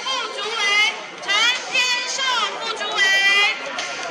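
A tightly packed crowd of many people calling out and chattering over one another, with high voices rising above the rest.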